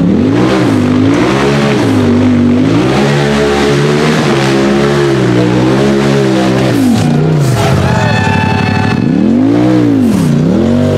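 Polaris RZR side-by-side's engine revving up and down under load as it climbs a steep muddy hill, its pitch rising and falling every second or two as the throttle is worked.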